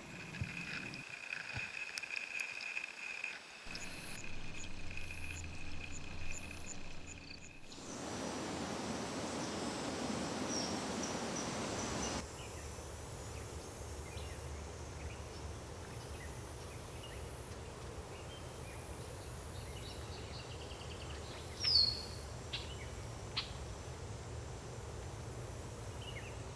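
Outdoor field ambience. Insects call with a steady high buzz for the first several seconds, then comes a stretch of louder rushing noise, then quieter background with one short bird chirp a little past two-thirds of the way through.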